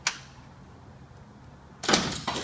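A single sharp metallic crack as the engine's fan clutch breaks loose from its shaft under a wrench. Near the end comes a louder burst of metal tools clattering.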